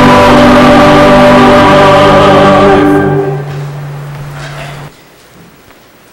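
Church choir and congregation singing the held final chord of a hymn, which dies away about three seconds in. A single low accompanying note holds on and stops about five seconds in.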